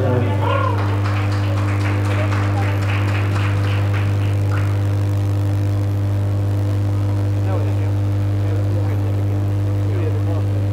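A loud, steady low hum runs through the whole sound, with indistinct voices of people chattering in the hall over it, busiest in the first few seconds.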